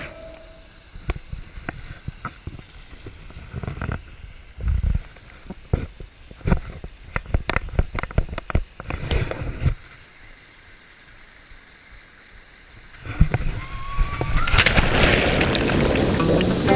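Scattered knocks, scrapes and rustles of a handheld camera being carried over rock and dry brush. Near the end comes a loud rush of water as the camera goes into the pool.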